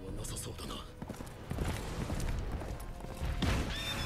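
Anime soundtrack played quietly: a horse's hoofbeats and whinnying over background music, with a line of dialogue at the start.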